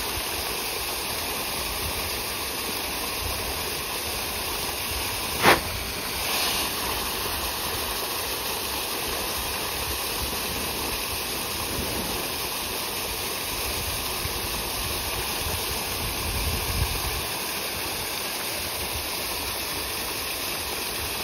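Continuous splashing and churning of water from a dense shoal of fish thrashing at the surface while feeding, with one sharp, loud splash about five and a half seconds in.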